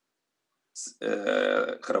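A man's voice on a video call: dead silence for the first part, a short breath, then a drawn-out, steady-pitched hesitation sound held for about a second before his speech resumes.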